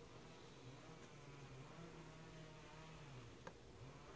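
Near silence: room tone with a faint low hum and one faint click about three and a half seconds in.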